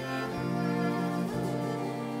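String quartet of two violins, viola and cello playing slow, sustained bowed chords, the harmony moving to new notes twice.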